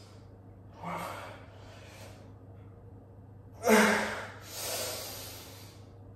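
A man breathing hard under the strain of dumbbell curls. A short voiced gasp comes about a second in. Then a loud gasp with a grunt in it at about three and a half seconds, followed by a long exhale.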